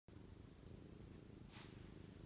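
Domestic ginger tabby cat purring faintly and steadily while its head is stroked, with a brief soft rustle about three-quarters of the way through.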